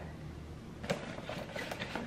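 Faint handling of a cardboard gift box held in the hands: a few light taps and rustles, the clearest about a second in, over quiet room tone.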